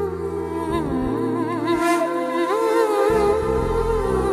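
Film song music: a wordless voice humming a wavering, ornamented melody over sustained low notes, the bass dropping out briefly in the middle.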